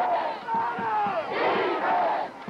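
Crowd of spectators at a high school football game shouting and cheering, many voices yelling over one another, with a brief lull about half a second in.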